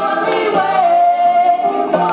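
Gospel singing played from a vinyl LP record, with one long held note from about half a second in until near the end, over low accompaniment.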